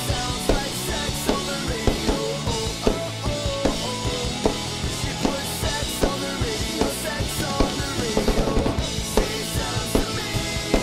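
Mapex Pro M drum kit played over a pop-punk backing track: steady kick and snare hits with crash cymbals over the song's guitars and bass. A quick run of hits, a drum fill, comes about eight seconds in.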